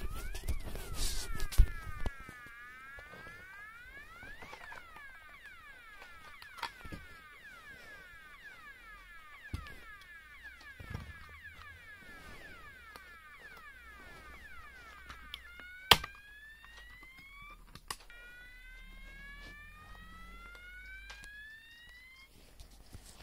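Electronic fire alarm sounder tones: a fast warble sweeping up and down, changing about three quarters of the way through to a slower tone that rises again and again, like a whoop. Handling knocks from the plastic unit come in the first two seconds, and there is a sharp click near the end.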